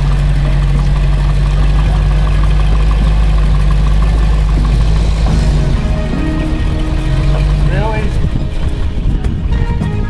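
Land Rover Discovery's V8 engine running at low speed in a steady low drone as the truck crawls down over boulders. The engine sound fades near the end as music comes in.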